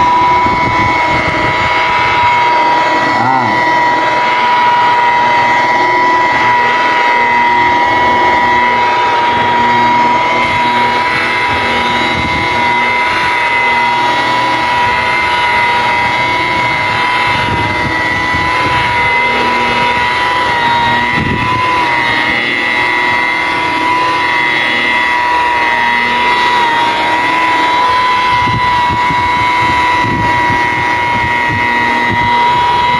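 Electric rotary polisher running steadily with a high whine while its pad buffs polishing compound into a car's painted bonnet; the pitch wavers slightly now and then as the tool is pressed and moved.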